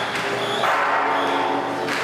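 Traditional temple procession music: held pitched wind notes over a dense continuous band, with crashes about once a second.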